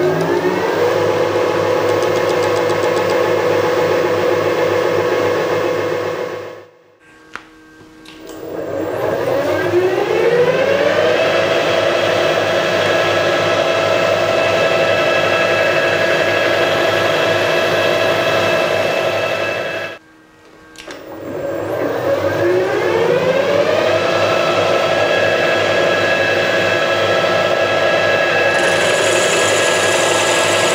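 Milling machine spindle motor running with a steady whine of several tones, drilling into the vise body. It stops twice, about a quarter of the way in and again about two-thirds through, and each time spins back up with a rising whine before settling.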